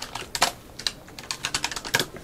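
Typing on a keyboard: a run of quick, irregular key clicks, one of them louder about half a second in.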